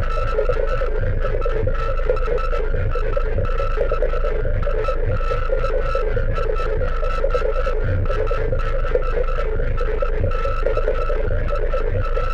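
Live improvised electronic music played on synthesizers and drum machines: a steady low drone and a dense mid-range synth tone under a higher held note that keeps breaking off briefly, with quick regular high ticks and occasional low thumps.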